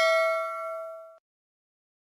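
Notification-bell ding sound effect of a subscribe-button animation: a bright chime of several tones ringing out and fading, cut off just over a second in.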